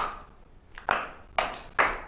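Footsteps of hard-soled shoes coming down hard stairs: four sharp steps, about one every half second, each with a short ring.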